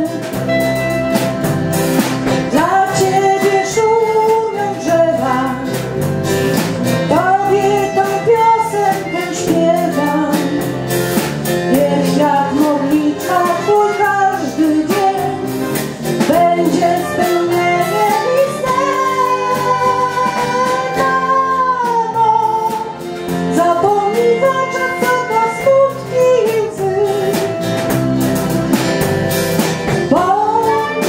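A women's choir singing a song with band accompaniment that includes guitar, the melody carried in long held notes.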